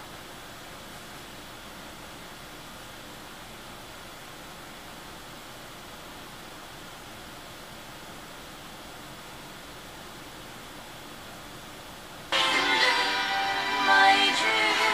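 Insignia tabletop HD radio seeking up the FM band: a steady low hiss while it searches, then music from its speaker cuts in suddenly near the end as it locks onto a station.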